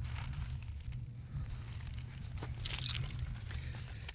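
Steady low wind rumble on the microphone from a light breeze, with faint rustling and a short hiss about three seconds in.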